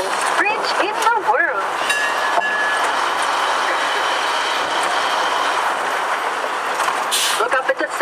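Steady road and wind noise of a moving open-air fire engine, with faint steady whining tones and a low hum under it. A brief hiss comes near the end.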